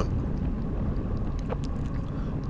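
Steady wind rush and road noise on a bike-mounted camera's microphone while a road bike rides at speed in a group, a low even rumble with no distinct events.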